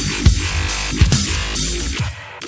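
Drum kit played over music with sustained bass and chords, with loud, punchy bass drum hits twice in the first second.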